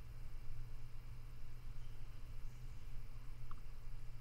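Room tone: a steady low hum with a faint haze above it, and a faint short blip about three and a half seconds in.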